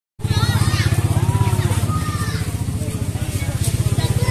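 Small Suzuki van's engine idling close by, a loud, steady low throb with a fast even pulse, with voices talking over it.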